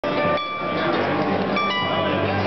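Pellerin acoustic harp-guitar played fingerstyle: ringing notes and chords that sustain and overlap, with fresh notes struck about half a second in and again near the end.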